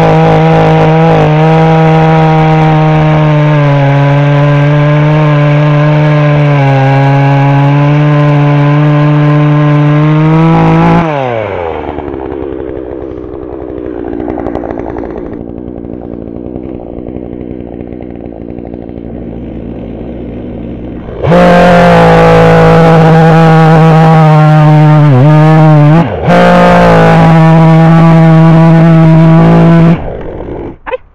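Hyundai two-stroke petrol chainsaw at full throttle cutting through a fallen branch. About 11 seconds in it drops to idle for roughly ten seconds, then revs up again and cuts, with a brief dip in revs near 26 seconds.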